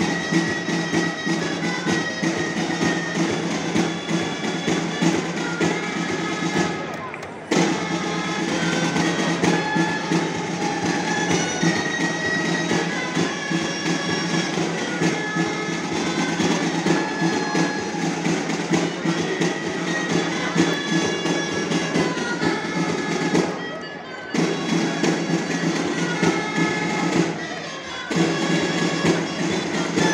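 Live folk music for a giants' dance: shrill reed wind instruments playing a melody over a steady low drone, with a few brief breaks between phrases.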